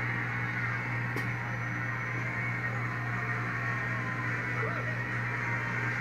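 Studio audience applause coming through a TV set's speaker, heard across a small room. A steady low hum runs under it throughout.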